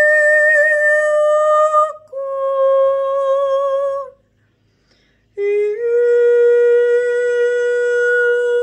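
A woman's voice singing a wordless 'light code' chant, unaccompanied. It is made of long, steady held notes: one ends about two seconds in, a slightly lower one follows, and after a short pause a third, lower note begins with a small step up and is held.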